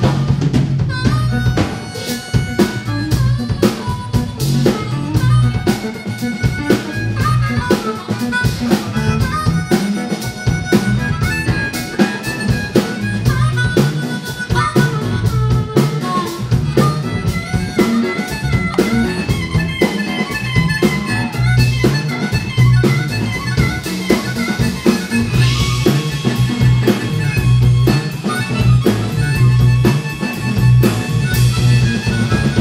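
Live electric blues band playing: a harmonica played into the vocal microphone carries the lead line with wavering held notes and bends, over electric guitar, bass guitar and a drum kit keeping a steady beat.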